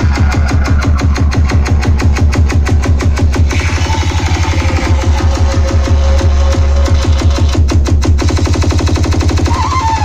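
Loud DJ dance music played over a large sound system, with heavy bass and a fast, driving drumbeat. A held note comes in about halfway through, and a wavering melody line starts near the end.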